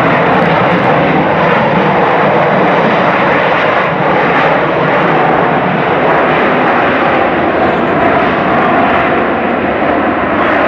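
Jet engines of a Boeing 737 rolling down the runway: a loud, steady rush of engine noise that holds level throughout.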